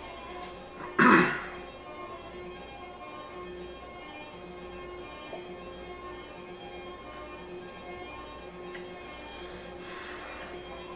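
A man clearing his throat once, sharply, about a second in, over faint steady background music.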